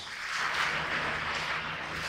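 A steady, breathy hiss lasting about two seconds.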